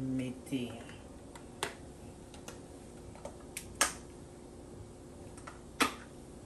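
A handful of separate sharp clicks, the loudest about four seconds in and again near the end, after a single short spoken word at the start.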